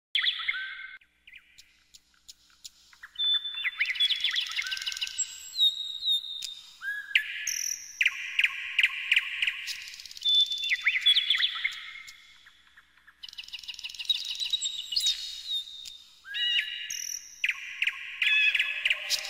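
Songbirds singing: phrases of clear whistles and rapid trills, each lasting a few seconds, with short pauses between them.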